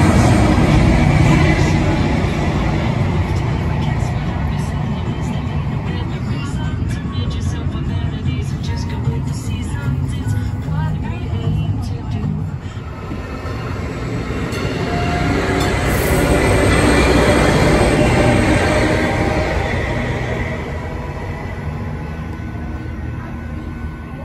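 Arrow passenger train, a diesel multiple unit, rumbling past close by, loudest in the first couple of seconds and swelling again about two-thirds of the way through.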